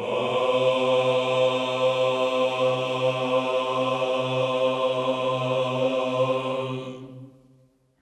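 Male Byzantine choir holding the last chord of the chant on one steady note over a low held drone, the ison. It dies away about seven seconds in, ending the piece.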